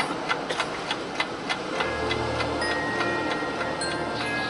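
Scattered hand clapping dies away over the first two seconds. Then the marching band's front ensemble begins a quiet sustained chord with a deep low note under held higher tones.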